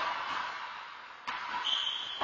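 A handball bouncing once on the hard court floor about a second in, with the knock echoing in the walled court, then a brief high-pitched squeak near the end.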